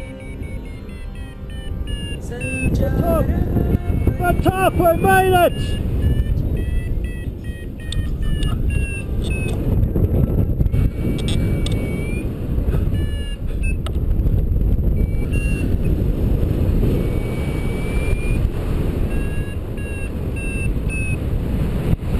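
Wind rushing over the camera's microphone in paragliding flight, a steady low rumble that swells and eases, with scattered short high electronic beeps.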